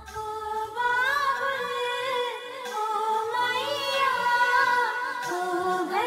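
Music: a sung vocal melody of held, wavering notes, with no clear beat.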